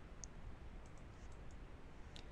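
Quiet room tone with a few short, faint clicks scattered through it.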